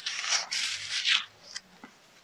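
Paper pages of a picture book being turned by hand: a paper rustle lasting about a second, then two faint clicks.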